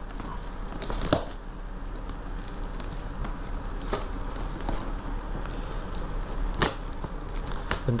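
Clear plastic packing tape on a cardboard parcel being picked at and peeled by hand, giving a faint crinkling rustle broken by a few sharp clicks and crackles as the stubborn tape gives way.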